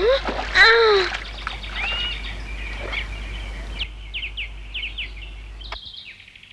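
A boy's short effort cries and a splash of water in the first second, then birds chirping, with a run of quick falling chirps near the end.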